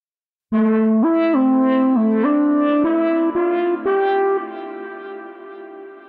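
reFX Nexus 4 lead synth preset '[Lo-fi 2] Empathy' playing a single-line melody of about eight notes. It starts about half a second in, and ends on a quieter held note.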